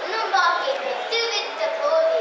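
A young girl speaking into a microphone, her voice carried over a PA, with some short held vowels.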